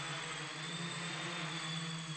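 Quadcopter's electric motors and propellers running steadily in flight, a steady even hum.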